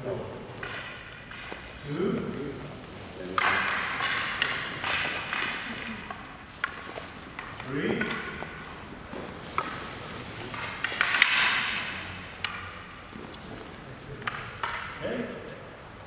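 Wooden bokken practice swords knocking together in a few sharp, separate clacks, over indistinct voices in the hall.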